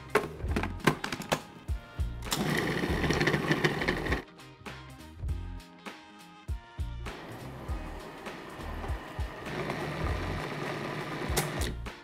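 Food processor motor running steadily as it blends frozen bananas into a creamy soft-serve, under background music with a steady beat. Partway through, the motor drops out for a few seconds and only the music is heard, then it returns.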